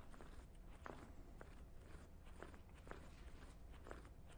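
Near silence: room tone with a steady low hum and a few faint, short ticks.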